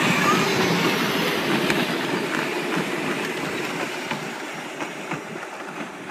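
Hard plastic wheels of battery-powered Power Wheels ride-on toys rumbling and clattering over a concrete driveway, growing steadily fainter as the toys drive away.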